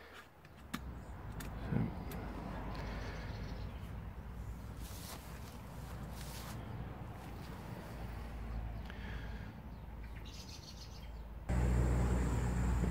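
A stainless steel kettle set down on a lit wood-gas camping stove with a couple of light metal clinks, then a steady low rushing as the stove burns under it, with birds chirping now and then. Just before the end a louder steady rush comes in as the kettle steams at the boil.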